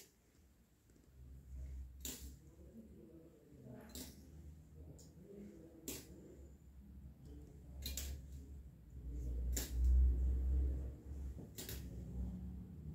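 Close handling noise as gloved hands work acupuncture needles in a patient's back: short sharp clicks about every two seconds over a low rumble that swells about ten seconds in.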